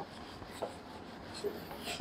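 Faint writing sounds, with two soft ticks, one about half a second in and one about a second and a half in.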